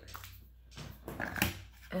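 A dog making a brief sound near the middle, with a sharp click.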